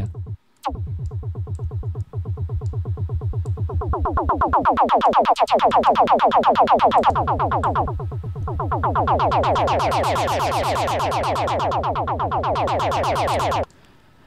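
Synth bass patch played through Ableton Live's Simpler sampler, pulsing rapidly at about eight beats a second from a tempo-synced LFO on its filter. The filter cutoff is raised during the passage, so the tone grows brighter in the second half. It cuts out briefly about half a second in and stops just before the end.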